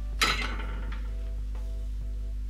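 Background music with a repeating plucked-note melody, and about a quarter-second in a short metallic clink as the soldering iron is pulled from its metal stand.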